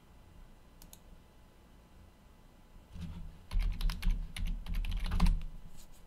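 Typing on a computer keyboard: a quick run of about ten keystrokes starting about three seconds in, after a quiet stretch with a faint click about a second in.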